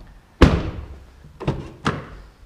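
A 2014 Chevrolet Malibu's car door is shut with one heavy slam about half a second in. Two lighter sharp clicks follow near the end as the front door's handle and latch are worked.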